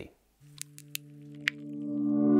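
Intro sting: a held low chord swells steadily louder for about two seconds and then cuts off abruptly, with a few short sharp clicks near the start.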